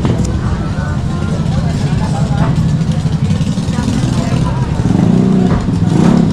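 A small motorcycle engine running steadily at close range, growing louder about five seconds in, with faint voices of people in the street.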